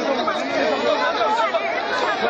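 A dense crowd's many voices talking at once, a continuous babble with no single clear speaker.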